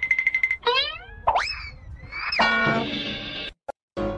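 Cartoon comedy sound effects: a fast-repeating high beeping note stops just after the start, then a quick rising zip and a boing-like whistle that slides up and back down, followed by a ringing chord that fades over about a second before the sound cuts off shortly before the end.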